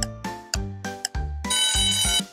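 Countdown-timer sound effect: pitched plucked notes about two a second, then a bright, steady ringing tone from about one and a half seconds in as the count reaches zero.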